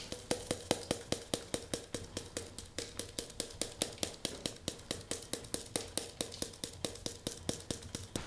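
A hand spice grinder turned in steady, even strokes, about five or six clicks a second, grinding seasoning out.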